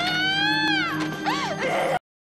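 A young woman's long, high anguished wailing scream that wavers and then sags in pitch, followed by a shorter cry, over a low sustained music drone. It cuts off suddenly at the end.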